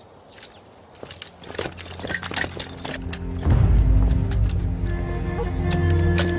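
Tense film-score music building, its low sustained drone swelling louder from about three seconds in. Under it are quick clinks and footfalls of soldiers moving with rifles and gear.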